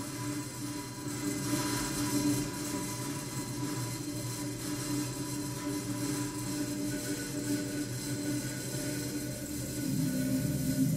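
Electronic soundscape made from sonified telescope data: a steady drone of held low tones, with a high hiss swelling about a second and a half in. It is played over the hall's speakers.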